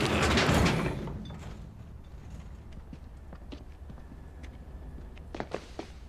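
A homemade wooden squeeze machine dumped into a metal dumpster: a loud crash and clatter in the first second that dies away, then a few small knocks near the end.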